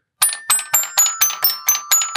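Fisher-Price alligator toy xylophone: its built-in buttons strike the metal bars in a quick run of about eight notes, roughly four a second. The notes sound like a toy piano and keep ringing into one another.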